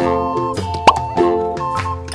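Bright children's background music with a single short rising 'plop' sound effect about a second in, marking the plastic toy capsule popping open.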